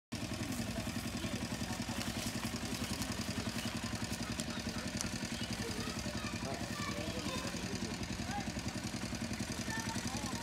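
A small engine running steadily at low speed, with a fast, even chugging beat; faint voices are heard over it from about halfway in.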